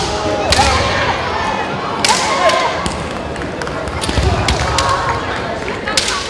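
Kendo bouts in a gymnasium: several sharp cracks and thuds as bamboo shinai strike armour and feet stamp on the wooden floor, mixed with shouting voices.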